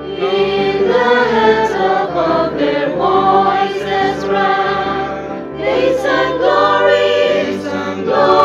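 Mixed choir of men and women singing a Christmas anthem in parts, on the line "In the heav'ns above their voices rang".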